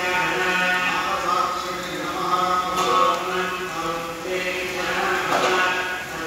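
A man chanting Hindu mantras in a steady, droning recitation, with long held notes that step in pitch. A short rush of noise comes about five seconds in.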